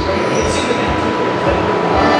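Loud, steady rumbling noise from the gallery's exhibit soundtrack, with a thin steady tone running through it.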